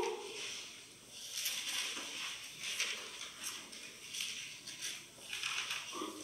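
Faint, irregular rustling of paper pages being turned, as a Bible is leafed through to a passage.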